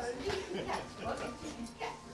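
Indistinct voices of several people chattering and calling out in short bursts.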